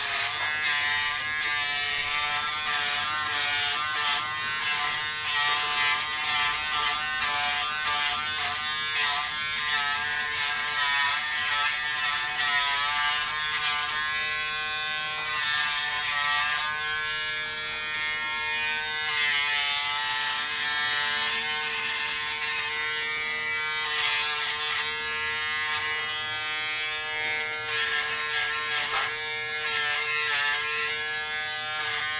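Braun Series 5 5018s electric shaver running as it is drawn over the neck and jaw: a steady buzz whose pitch wavers slightly as the head moves over the skin, with a hiss above it.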